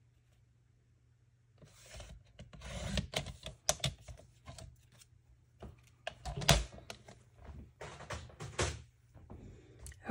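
Hands working with cardstock, a photo and a paper trimmer on a craft mat: irregular paper rustling with many small clicks and knocks, the sharpest knock about six and a half seconds in.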